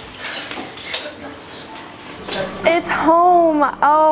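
Dining-room clatter of dishes and cutlery clinking, with people talking at the tables; about three seconds in, a woman's voice comes in clearly over it.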